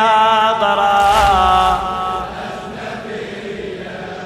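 A male reciter chanting a long, wavering held note of a Shia mourning elegy (latmiya), trailing off after about two seconds. About a second in, a dull thud comes from the crowd beating their chests together.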